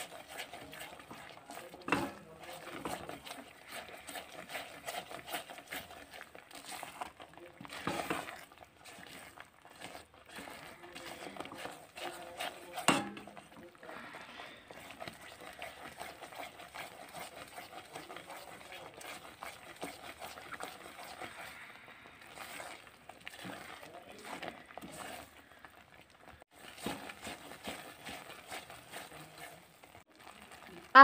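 Silicone spatula stirring and scraping a thick mixture of ground dried coconut and sugar syrup in a metal kadhai as it cooks, a faint continuous scraping with a few louder knocks of the spatula against the pan, near the start and twice in the first half.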